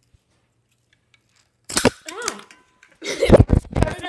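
A sharp smack as a toy slingshot is fired, a little under two seconds in, followed by a short voiced exclamation, then a louder jumble of knocks about a second later.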